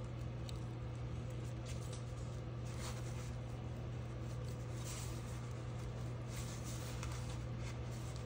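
Quiet room tone: a steady low hum with a few faint, light ticks scattered through it.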